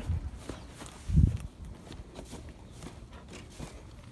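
Footsteps on grass, with one dull thump about a second in.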